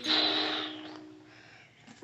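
A single breathy exhale close to the microphone, fading away within about a second, followed by near silence.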